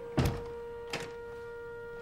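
Two thuds at a wooden door, a loud one just after the start and a softer one about a second in, over a sustained orchestral note.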